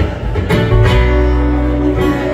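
Live band playing an instrumental passage between sung lines: strummed acoustic guitar over electric guitar and upright bass, with a few strong strums in the first second.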